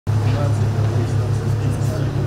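A loud, steady low mechanical hum, with people talking quietly in the background.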